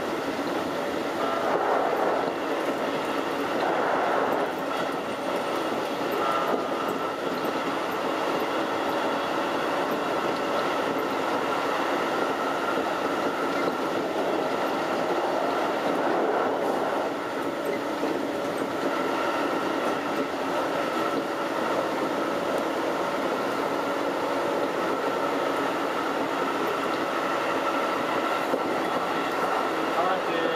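Keikyu 2100-series electric train running at speed, heard from inside the front car: a continuous rumble of wheels on rail with a steady high whine throughout.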